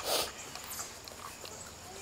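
Yellow Labrador puppy chewing and mouthing a rubber flip-flop close to the microphone, with one short loud snuffle of breath right at the start.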